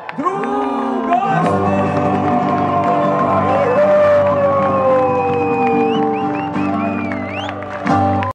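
Live band music with singing over acoustic guitar and double bass, settling about a second and a half in onto a long sustained chord with a held note sliding slowly downward, the close of a song.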